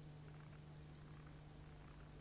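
Near silence: a steady low hum over faint hiss, the background noise of a blank stretch of videotape.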